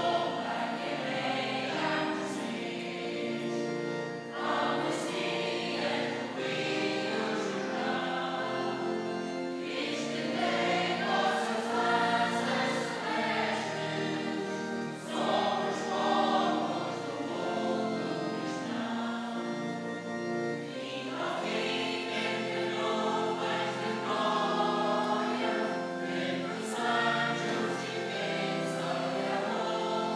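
Church choir singing a processional hymn with accompaniment, phrases rising and falling over sustained held notes.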